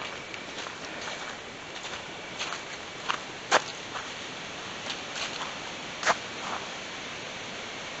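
Footsteps on a dirt and leaf-litter trail: a few scattered soft crunches and sharp clicks, the sharpest about three and a half and six seconds in, over a steady hiss.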